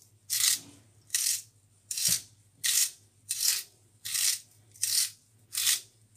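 A carrot being turned in a handheld kitchen vegetable sharpener, the blade shaving a ribbon off it: a rasping scrape with each turn, about eight in a row, roughly one every three-quarters of a second.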